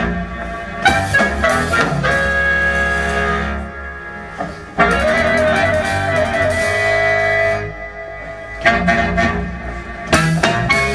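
A band playing an instrumental piece: long held melody notes over a steady bass, in phrases with short breaks about four and eight seconds in.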